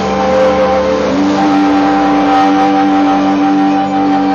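A violin and amplified music holding long droning notes, with one note sliding up in pitch about a second in and then held.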